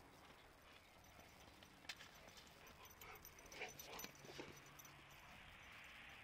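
Faint sounds of two Weimaraners play-wrestling on dirt: paws scuffling and a soft knock about two seconds in, then a cluster of short noises between about three and four and a half seconds.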